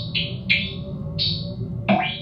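Improvised electronic music from an electric guitar and synthesizer run through effects: a low steady drone under short, bright, filtered bursts that recur every half second or so, with a sharper plucked attack falling in pitch near the end.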